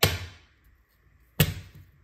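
Two sharp claw-hammer knocks, about a second and a half apart, the second louder, striking a duct-tape tab stuck to a floating laminate floor plank to tap the plank sideways and close a gap between boards.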